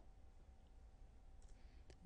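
Near silence: room tone with a faint steady hum, and a single faint click near the end as the presentation slide advances.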